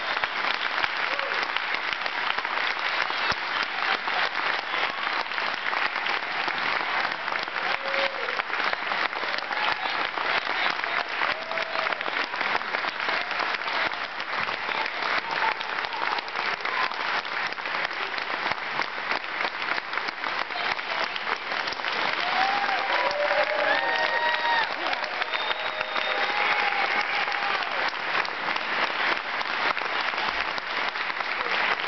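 Audience applauding steadily, the clapping dense and even, with a few voices calling out over it near the end.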